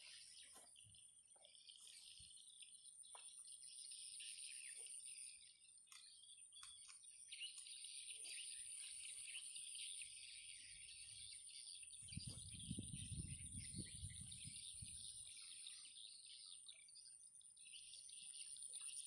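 Faint open-air ambience: a steady high insect drone with birds chirping. A low rumble comes in for a few seconds about two-thirds of the way through.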